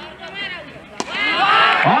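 A cricket bat striking the ball with a single sharp crack about a second in, a big hit that goes for six. An excited commentator's voice follows right after.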